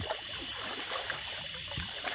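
Shallow river water trickling and lapping around a boat hull and a person wading beside it, as the grounded jet boat is worked off a shallow spot.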